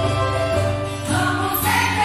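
Small church choir singing a hymn over keyboard accompaniment with steady bass notes; the voices grow stronger about halfway through.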